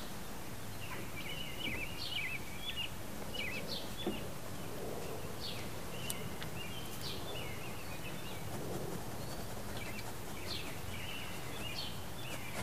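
Wild birds chirping in short, repeated calls over a steady outdoor background hiss.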